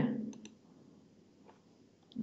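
A few faint computer mouse clicks, a quick pair near the start and a single one about halfway through, with the tail end of a man's speech fading out in the first half second.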